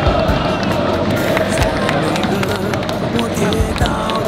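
Large stadium crowd of football supporters singing and cheering together, a dense wash of many voices, with music running under it.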